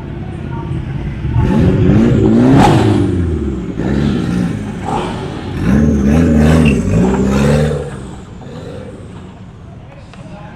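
A car engine revved hard several times in two bouts, its pitch sweeping up and down with each blip of the throttle, then fading as it moves off.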